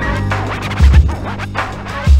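Hip hop beat with a DJ scratching a record on a turntable over heavy drums and bass, the loudest drum hits falling just before one second in.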